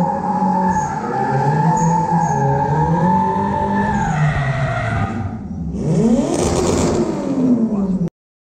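Drift cars sliding around a track: engines revving up and down with sustained tyre squeal. About six seconds in, an engine climbs sharply in pitch under hard acceleration amid a hiss of spinning tyres.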